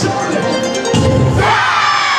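Dance music with a large troupe of dancers shouting together. A new long group shout rises about one and a half seconds in, as the dancers drop into their closing kneeling pose.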